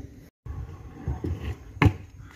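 Stunt scooter wheels rolling on concrete paving with a low rumble, then one sharp clack near the end.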